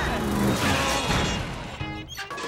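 Busy cartoon action music, with a crash about half a second in as a wooden battering ram smashes and breaks.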